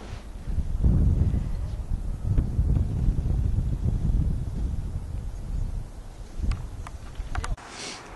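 Wind buffeting the camera microphone: an uneven low rumble that stops about seven and a half seconds in, with a few faint clicks near the end.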